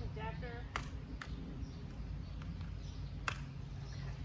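A few sharp clicks and knocks from handling the fittings on a Bob All-Terrain Pro stroller, the loudest about three seconds in, over a steady low outdoor rumble.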